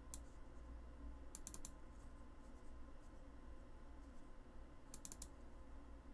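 Faint computer mouse clicks in quick clusters: one click at the start, a run of three or four about one and a half seconds in, and another run near the five-second mark, the double-clicks of opening folders. A low steady hum runs underneath.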